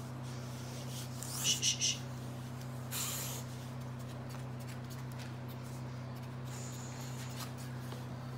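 Plastic squeeze-bottle powder puffer squeezed repeatedly: three quick puffs of air about a second and a half in, then a longer puff about three seconds in, dusting medicated powder onto a dog's shaved hot spot. A steady low hum runs underneath.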